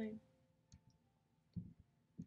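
A woman's spoken word ends, then a near-silent pause with a few faint mouth clicks and a soft breath.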